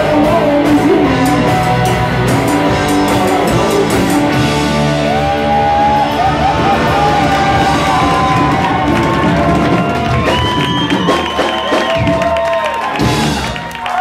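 A live rock band, with electric guitars, bass guitar and drums, playing an instrumental passage. A lead line bends in pitch through the middle, and the music drops away near the end as the song finishes.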